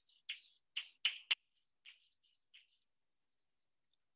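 Chalk writing on a blackboard: a run of short scratchy strokes with a couple of sharp taps about a second in, then fainter light scratching in the second half.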